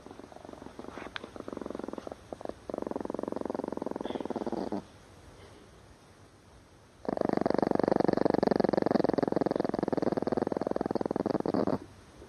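Chihuahua growling in two long, rough rumbles: a quieter one in the first half, then a louder one from about seven seconds in that cuts off suddenly near the end. It is the warning growl of an angry little dog.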